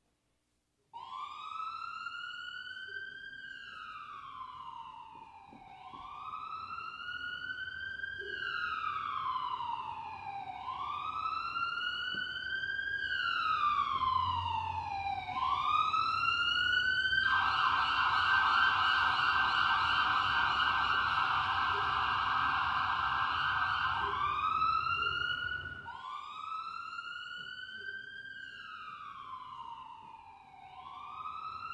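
Emergency vehicle siren starting about a second in and wailing, each slow rise and fall taking about two and a half seconds. In the middle it switches to a fast yelp for about seven seconds, then goes back to the wail. A low rumble runs under it until near the end.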